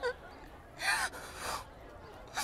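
A young woman's short, gasping breaths as she starts to cry, three in quick succession.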